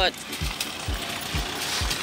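Footsteps of someone walking, each a dull low thump, about two a second, picked up by a handheld phone's microphone over a faint hiss.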